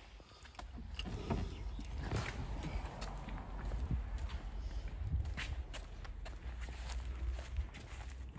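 Footsteps on a concrete driveway with the rustle and light knocks of a handheld phone being carried.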